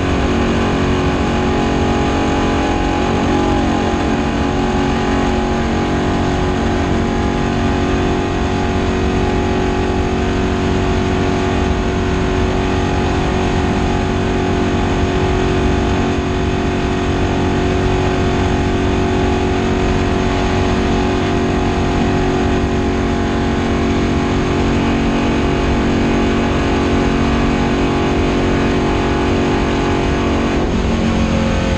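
Stock car's V8 engine running flat out at a steady pitch, heard from inside the cockpit, with a brief dip and rise in pitch a few seconds in.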